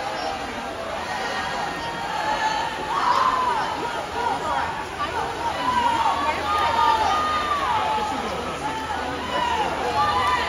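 Crowd of spectators calling out and cheering, many voices overlapping indistinctly over a steady wash of background noise, with louder shouts about three seconds in and again around six to seven seconds.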